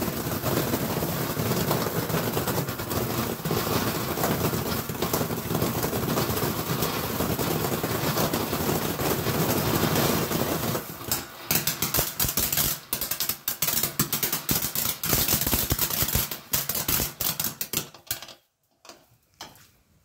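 Top Gun cone firework fountain burning, spraying sparks with a steady hiss and dense crackle. About eleven seconds in it breaks into scattered crackles, and it dies out near the end.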